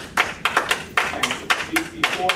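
Audience clapping: a run of separate, uneven hand claps, several a second.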